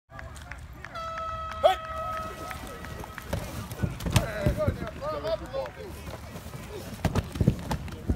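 Football practice drill sounds: a steady pitched tone lasting about two seconds near the start, then voices calling out and sharp thuds of padded players hitting, one about four seconds in and two close together near the end.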